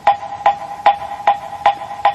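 A wooden fish (moktak) struck in a steady beat, about five hollow, pitched knocks two and a half a second, keeping time for the sutra chant between verses.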